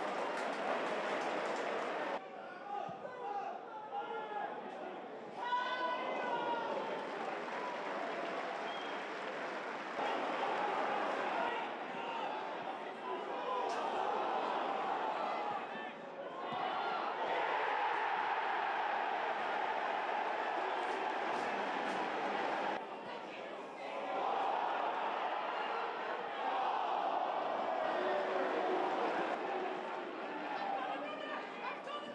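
Football stadium crowd noise: many fans shouting and chanting together as a steady, dense roar, with sudden shifts where the highlight clips cut, and the crowd swelling a little after the midway point.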